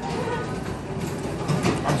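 Steady background noise of a busy restaurant dining room, with faint murmured voices of other diners.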